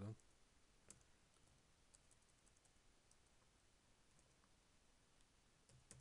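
Near silence: room tone with a few faint computer keyboard clicks, one clearer about a second in.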